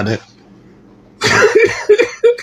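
A man coughing: after his talk breaks off and a short pause, a loud cough comes about a second in and runs nearly a second.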